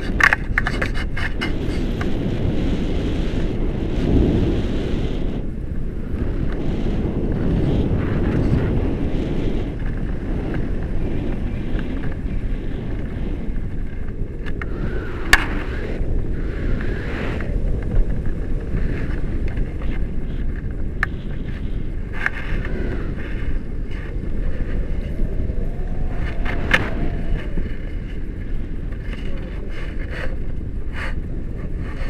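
Wind buffeting a camera microphone during a tandem paraglider flight: a steady low rumble, with a few sharp clicks, the loudest about fifteen seconds in.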